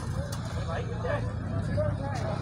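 Faint, distant voices of people calling out over a steady low rumble.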